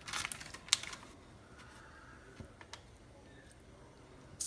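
A metal spoon scraping and clicking as diced apple filling is scooped from a parchment-lined tray: a cluster of short clicks and scrapes in the first second, then quiet with a few faint ticks.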